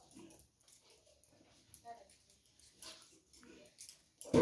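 Near silence: room tone with a few faint, brief sounds.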